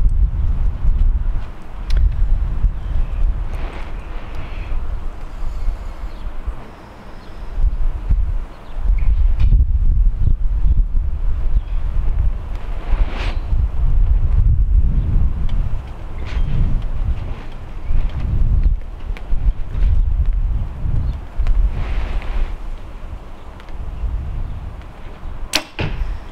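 Wind buffeting the microphone with a low rumble throughout. Near the end comes a single sharp crack as a PSE Evo NXT 33 compound bow is shot with a hinge release, loosing the arrow.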